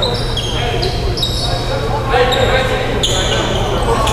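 Basketball shoes squeaking on a hardwood gym floor during a game, many short high squeaks that come and go at different pitches, in a large echoing gym.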